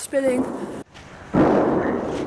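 A distant firework bang: a sudden boom about one and a half seconds in, rolling away slowly over more than a second.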